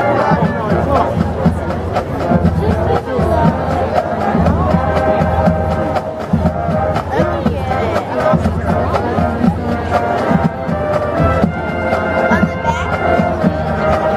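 High school marching band playing, with brass and sousaphones holding sustained notes over a steady drumbeat.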